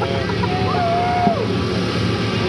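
A Jeep CJ's engine running hard as the Jeep churns through deep mud with its tires spinning. A single drawn-out shout from the crowd rises over it in the middle and falls away.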